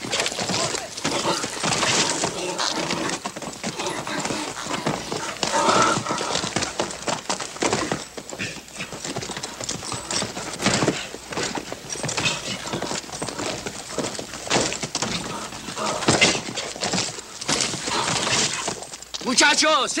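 A horse being ridden and broken in a dirt corral: its hooves pound irregularly and it whinnies, while men shout and whoop from the fence.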